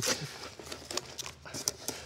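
Paper wrapping and cardboard box flaps being pulled open and crinkled by hand: a run of quick, sharp crackles and rustles, the loudest right at the start.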